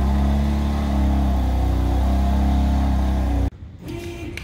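BMW F80 M3's twin-turbo inline-six engine running with a steady low exhaust note, cutting off suddenly near the end.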